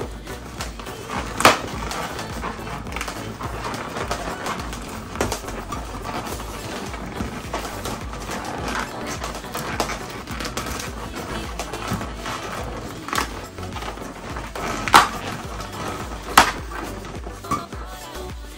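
Background music, with latex modeling balloons squeaking and rubbing as hands twist and fit them together. A few sharp squeaks stand out, about a second and a half in and twice near the end.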